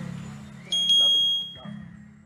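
A single high electronic ding with a click at its onset, the notification-bell sound effect of a subscribe-button animation, ringing for about a second and fading out. Low background music dies away under it.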